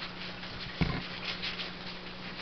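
Paper trading cards sliding and rubbing against each other as a hand-held stack of fake Yu-Gi-Oh cards is leafed through, with a short low thump just under a second in.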